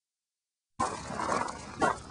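Silence for most of the first second, then a rough outdoor rustle and a single short dog bark near the end. The bark is one of the border collies running in the field.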